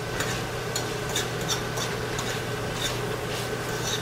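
Ground beef sizzling in its own fat in a frying pan while a metal utensil stirs it, with many short scrapes and clicks against the pan.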